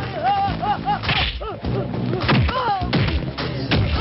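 Film fight sound effects: a run of sharp punch and whip-like hits, several of them with a falling low thud. Pitched, voice-like cries and grunts come between the blows.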